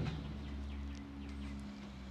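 Quiet outdoor background: a faint steady low hum with a few faint bird chirps.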